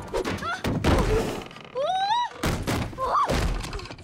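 Several hard wooden thumps and knocks as a body tumbles into a wooden rowboat on a dock, with a young woman's short yelps and gasps between the impacts.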